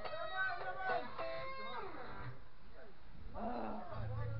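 Guitar being played by hand, plucked notes ringing through the first couple of seconds and then dying away, with voices over it.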